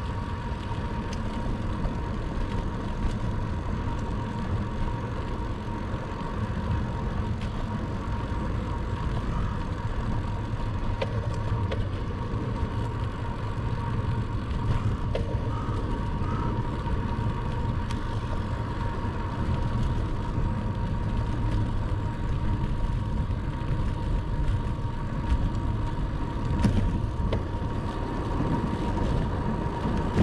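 Bicycle rolling downhill: wind rushing over the camera microphone with a steady low rumble of wind and tyre noise on asphalt.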